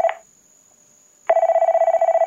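Telephone ringing with an electronic trilling ring. One ring ends just after the start, and the next begins about a second later and is still ringing at the end.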